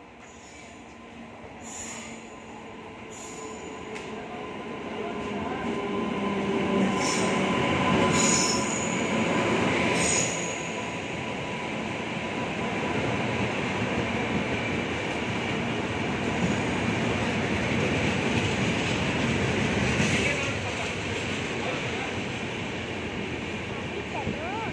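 Janshatabdi Express passenger train pulling into the station, its coaches rolling past with wheels rumbling on the rails and a high squeal of braking wheels. The sound grows louder over the first ten seconds, then holds steady as the train slows toward a halt, with a few sharp clanks along the way.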